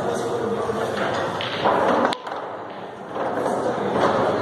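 A single sharp click of a pool cue striking the cue ball about two seconds in, over the murmur of spectators talking in a large hall.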